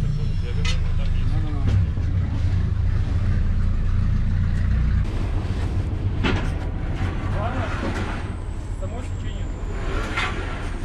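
Steel scaffolding frames clanking as they are carried and loaded into a van, a few sharp metal knocks over a steady low rumble that eases about halfway through.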